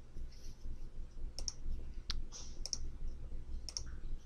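Computer mouse button clicking: a few sharp clicks, mostly in close pairs, about a second apart, as on-screen buttons are clicked one after another.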